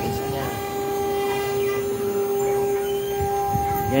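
CNC router spindle running with a steady high-pitched whine, its 2 mm ball-nose bit taking a finishing pass through a pine board.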